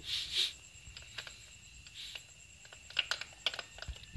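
Light metallic clicks and taps of a motorcycle starter gear being handled and seated by hand against the engine casing, scattered and irregular, with a quick cluster about three seconds in.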